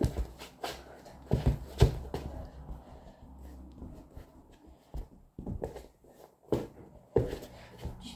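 A football kicked repeatedly with a sock-clad foot and rebounding off furniture on a wooden floor: an irregular run of about a dozen dull thuds, sparser for a couple of seconds midway, with shuffling footsteps between.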